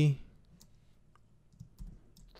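Computer keyboard being typed on: a handful of light, scattered keystrokes.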